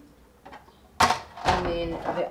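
Clear plastic round turntable organiser set down on a closet shelf: two sharp knocks, about a second in and again half a second later.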